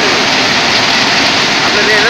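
Railway track maintenance machine running with a loud, steady mechanical noise as it works along the track.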